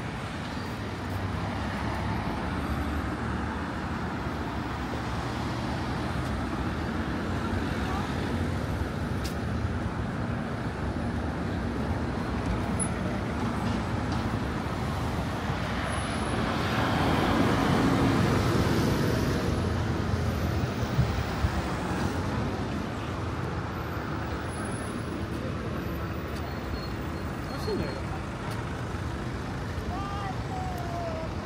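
Steady city road traffic, with a coach passing close by a little over halfway through, when the sound swells to its loudest and then fades.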